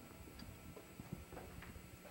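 Quiet room tone with a low hum and a few faint, irregular small ticks.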